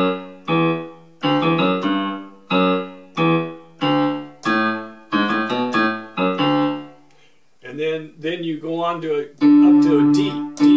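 Casio LK-280 electronic keyboard on a piano-pad voice, played slowly, one note at a time, in the low register: each note starts sharply and fades, about one or two a second, with a short pause about seven seconds in.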